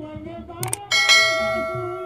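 A brass thali, the metal plate of Dhodiya tur-and-thali music, struck about a second in and ringing out with several clear, bell-like tones that slowly fade. Two sharp clicks come just before the strike. Underneath are a steady tur drumbeat and singing.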